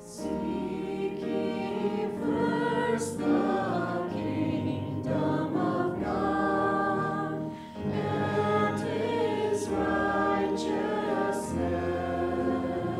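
Small church worship band singing: several voices in harmony over acoustic guitar and keyboard, the voices coming in right at the start.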